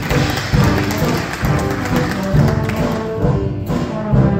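Live dance orchestra playing a 1930s dance-band arrangement: saxophones and brass over bass notes and drums.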